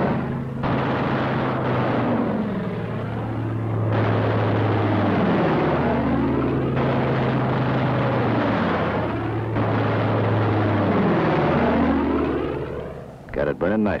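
P-47 Thunderbolt fighters' piston engines droning, the pitch sweeping up and down again and again as planes dive past on strafing runs. The sound fades and breaks off near the end.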